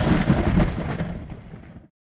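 Thunder sound effect: a loud rumbling crack with crackling strokes that fades away and then cuts off abruptly near the end.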